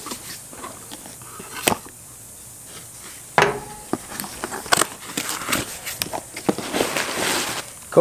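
Cardboard shipping box being opened by hand: the taped flaps are pried and pulled apart with a few sharp cardboard snaps and small scrapes, then a longer rustle of cardboard near the end.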